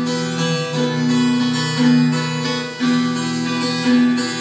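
Brazilian ten-string viola (viola caipira) played solo with picked, ringing notes that change about once a second, an instrumental introduction to a sung repente.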